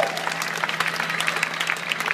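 Audience applauding: dense, even clapping from a concert crowd.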